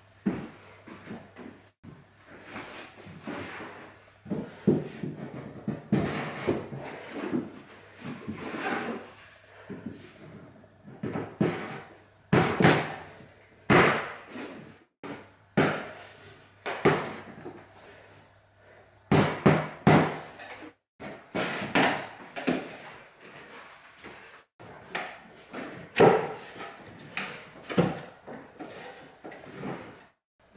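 MDF shelf and divider boards being fitted into the housing joints of a bookshelf carcass: a run of irregular wooden knocks, taps and short scrapes.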